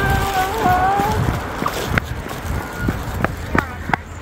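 Wind noise on the microphone and road rumble from riding an electric scooter. A drawn-out, slowly rising tone runs through the first second, and a few sharp knocks come in the later part.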